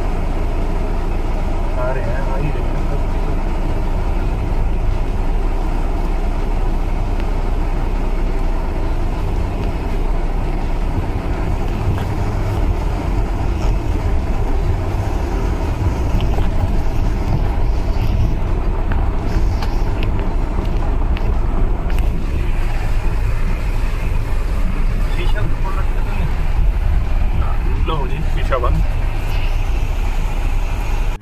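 Steady low engine and drivetrain rumble heard from inside the cab of an off-road 4x4 crawling over a rocky, stony riverbed track, with occasional knocks as the tyres go over stones.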